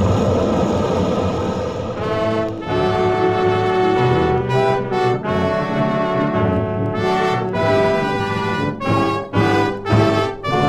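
The rumbling tail of a dynamite-explosion sound effect dies away over the first two seconds. It gives way to a dramatic orchestral brass music bridge, trombones and trumpets, with a few sharp stabs near the end.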